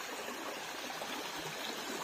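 A small woodland brook running over rocks: a steady, even rush of water.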